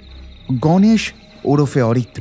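Two short spoken phrases over a steady, high cricket chirr in the background, with a low drone underneath.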